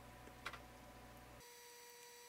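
Near silence with a single computer keyboard keystroke about half a second in: the Enter key launching the command. A faint low hum cuts out partway through.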